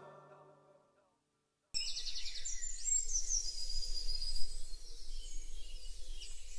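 The last of the song dies away, then after a moment of silence outdoor ambience starts suddenly: small birds chirping and twittering over a low steady rumble.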